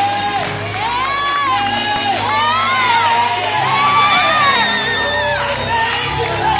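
Gospel choir singing in high, held, sliding phrases over a steady low instrumental backing, with the congregation cheering and shouting.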